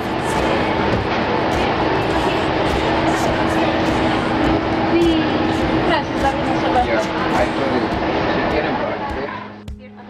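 Indistinct voices over dense background noise with a steady low hum. The sound drops away abruptly just before the end.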